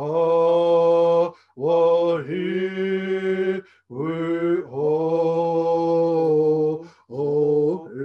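A man singing a slow, unaccompanied chant in long held notes, in four phrases separated by brief pauses for breath.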